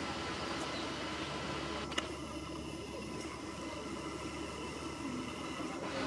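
Steady outdoor background noise with no clear single source, and one sharp click about two seconds in.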